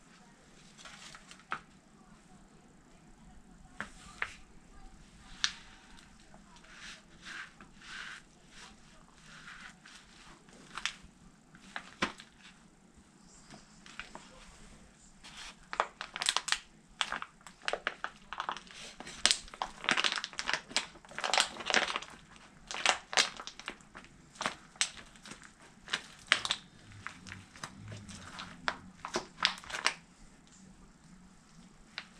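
Leather cowboy boots stomping and grinding an apple pie in its clear plastic tray, the plastic crackling and crunching under the soles. Scattered crackles at first, then a dense run of loud crunches through the second half.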